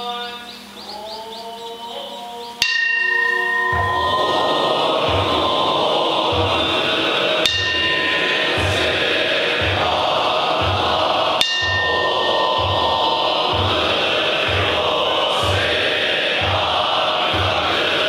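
Zen Buddhist monks chanting a sutra: a single voice intones first, then a bell is struck about two and a half seconds in and the group joins in unison chant over a steady low drum beat, about one and a half beats a second. The bell is struck twice more, around the middle.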